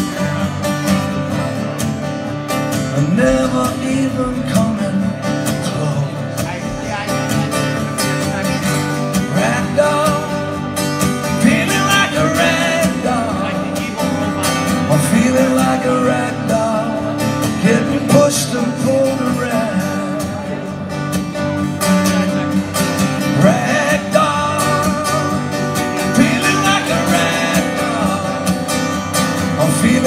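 Live solo performance: an acoustic guitar strummed steadily, with a male voice singing over it.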